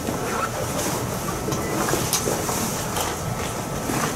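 Steady background room noise, a low rumble under an even hiss, with a few faint clicks.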